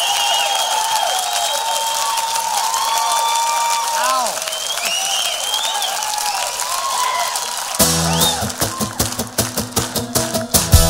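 Concert audience applauding and cheering, with many rising and falling whistles. About eight seconds in, a rock band comes in suddenly with steady strummed guitars and drums.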